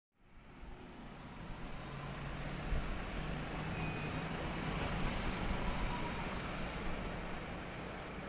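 Busy urban traffic and crowd ambience fading in from silence, then holding as a steady wash of noise with a faint low engine hum in the first half.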